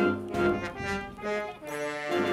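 A concert band plays sustained chords, with brass prominent. The level dips briefly about one and a half seconds in, then comes back.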